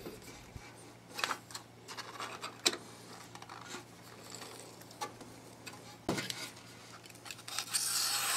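Sheet of paper being handled and smoothed over a surface grinder's magnetic chuck: faint rustling and scraping with a few light clicks and taps. Near the end a scratchy hiss begins as a utility knife starts slicing the paper.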